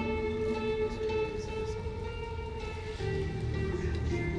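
Marching band playing slow held chords, with lower notes joining as the harmony changes about three seconds in.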